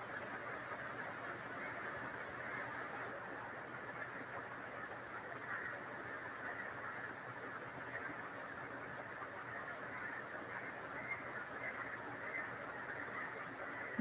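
Faint, steady background noise (room tone with hiss) and no distinct sound events.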